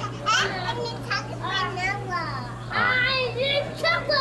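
Toddlers babbling and calling out in high voices, with a steady low hum underneath.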